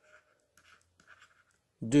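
Faint scratching of a stylus writing on a tablet, in a few short strokes. A voice starts speaking near the end.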